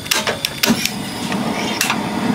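Sharp clicks of a long gas lighter and the gas control knob of a stainless-steel gas griddle as its burner is lit, several close together early on and one more near the end, over a steady hiss.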